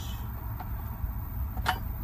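A steady low rumble, with one brief click about three-quarters of the way through.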